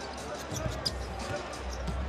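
Basketball dribbled on a hardwood court, a few faint bounces over the steady hum of an arena crowd.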